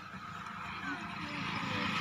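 A motor vehicle's engine, steadily growing louder as it approaches, under women's voices talking.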